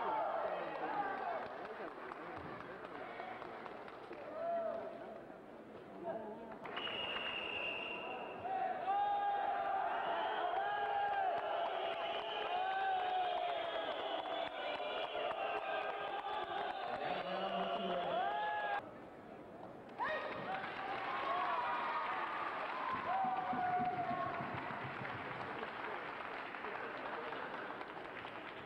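Indistinct crowd chatter and voices echoing in a large arena hall, with no clear words. The sound drops out abruptly twice, and a brief high steady tone sounds about seven seconds in.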